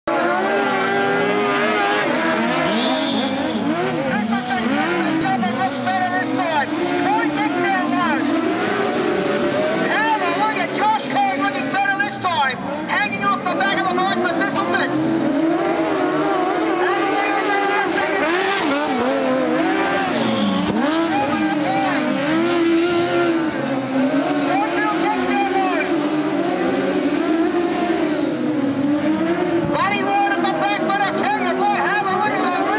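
Several speedway sidecar racing engines running hard around the track, their notes rising and falling continually as they rev and back off through the turns and pass by.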